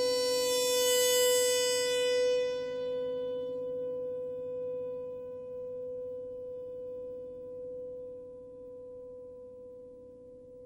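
A single held note from the horn-and-piano piece, ringing on and slowly dying away. Its upper overtones fade in the first few seconds, leaving a plain, steady tone that grows gradually fainter.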